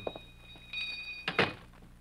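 Radio-drama sound effect of a door being shut, a single thunk about one and a half seconds in, preceded by faint steady high tones.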